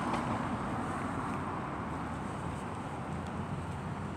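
Steady hum of road traffic with no distinct vehicle standing out.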